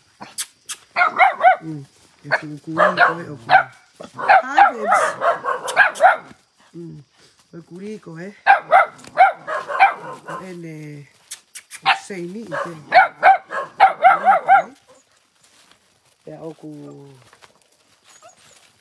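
A dog and a puppy play-fighting, with barks, yips and growls coming in several bouts separated by short pauses.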